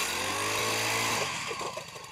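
Powered ice auger running as its spiral bit bores through lake ice, the small engine buzzing steadily and then easing off over the last second.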